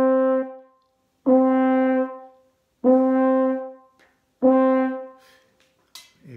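French horn playing the same note four times, each held about a second, with short gaps between. In the gaps the player breathes in through both corners of the mouth with the mouthpiece kept on the lips.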